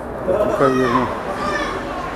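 Young voices shouting outdoors during a goal celebration: one loud, drawn-out call about half a second in and a fainter one later, over general chatter.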